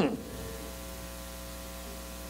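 Steady electrical mains hum, a set of low, even tones with a faint hiss over it.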